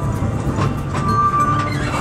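Ōigawa Railway Ikawa Line train running along the track, heard from on board as a steady low rumble with scattered knocks.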